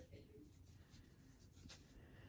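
Near silence: faint rubbing of yarn drawn through stitches with a crochet hook, with a light click near the end.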